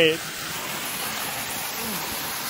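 Small waterfall pouring into a rock pool: a steady, even rushing of falling water.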